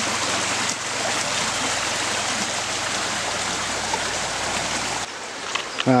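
Shallow stream running over a stony bed, a steady rush of water that cuts off suddenly about five seconds in.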